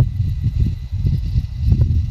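Low, uneven rumble of road and wind noise from a moving car.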